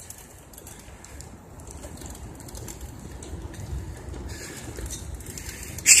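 Wind buffeting the microphone and bicycle tyres running on a paved path while riding: a steady low noise that slowly grows a little louder.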